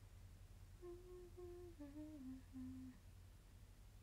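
A woman humming a short phrase of about five held notes that step down in pitch, lasting about two seconds.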